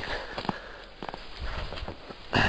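A few short crunches and clicks from a person moving through snow, then a low rumble of handling noise in the second half.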